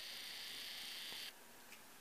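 Camcorder zoom motor whirring as the lens zooms in: a steady high hiss that stops abruptly just over a second in, followed by a few faint clicks.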